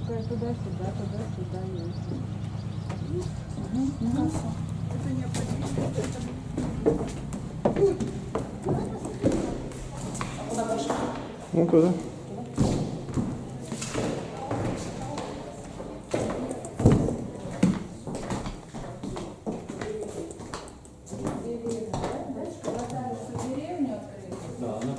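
Indistinct talk of several people with footsteps and knocks on a hard floor as a group walks through a building. A steady low hum runs through the first few seconds, then stops.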